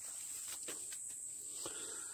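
Steady high-pitched insect chorus, with a few faint clicks.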